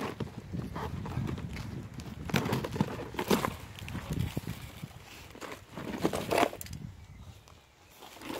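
A cardboard shipping box being cut open with kitchen shears and its lid pulled back: scissor snips, cardboard scraping and rustling, and gravel crunching underfoot, with a few sharper clicks and scrapes. It quietens near the end.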